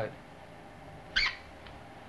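A single short, high-pitched squeak, like a squeaky shoe, about a second in, over a faint steady hum.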